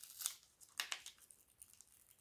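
A small kit envelope being opened by hand: a few short, faint crinkles and rustles of its wrapping, the loudest just under a second in.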